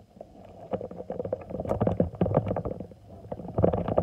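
Handling noise as a phone or camera is picked up and moved: rubbing and bumping right on the microphone, a low rumble with many small knocks, loudest near the end.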